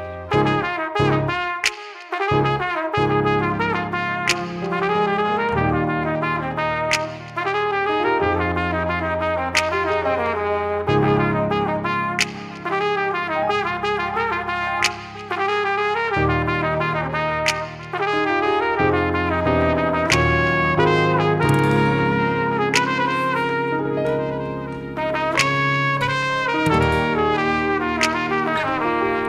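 Flugelhorn playing a smooth, legato melody line over sustained keyboard chords, with a light beat striking roughly every second and a half.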